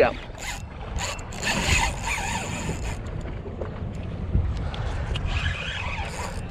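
Wind on the microphone and water against a small fishing boat, with a few short clicks and rattles from a spinning reel in the first two seconds as a fish takes the bait and bends the rod.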